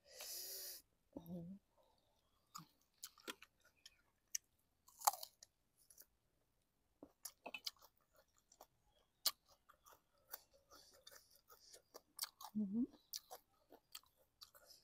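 A person chewing a mouthful of fermented-fish (pla daek) salad close to the microphone: many soft, wet mouth clicks and smacks. A brief hum of voice comes about a second in and again near the end.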